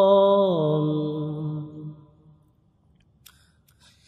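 A singer's voice holding the long closing note of a line of a Bengali Islamic song. The note drops in pitch about half a second in and fades away by about two seconds, leaving a near-silent pause with a few faint clicks.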